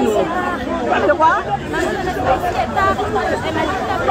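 Speech only: several voices talking at once in an agitated exchange, with repeated calls to calm down.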